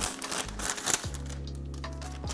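Paper receipt rustling and crinkling in the hands as it is unfolded and unrolled, a few short crackles, over background music with held low notes.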